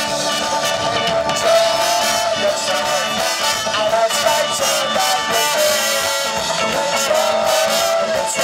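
Live ska band playing, with trombone, electric guitar, keyboard and drums; the lead line is a run of long held notes.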